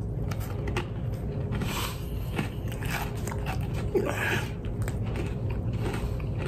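Biting into and chewing a freeze-dried ice cream sandwich: a run of irregular, crisp crunches. It is crunchy, not soft like a frozen one.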